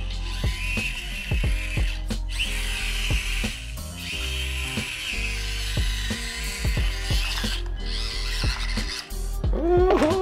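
Whine of the Axial SCX24 micro crawler's small electric motor and gears as it drives, rising and dropping in stretches as the throttle is worked. Music with deep sliding bass notes plays under it.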